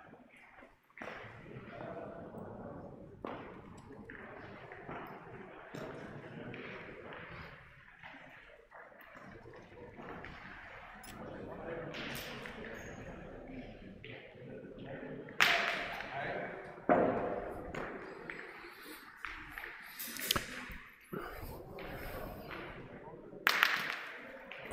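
Hall ambience of indistinct voices echoing in a large room, broken by several sharp metallic clacks of steel pétanque boules striking one another, loudest about fifteen seconds in and just before the end.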